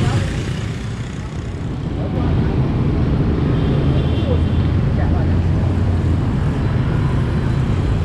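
Road traffic of many motorbikes and scooters passing close by, a steady low engine noise that grows louder about two seconds in.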